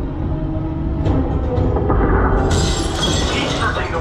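Dark-ride show soundtrack: a steady low rumble under held dramatic music, then about two and a half seconds in a loud crashing, glass-shattering sound effect breaks in and carries on.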